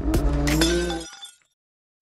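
Tail of a channel logo intro sting: sharp hits with a glassy, breaking quality over a held musical tone, fading out about a second in, then silence.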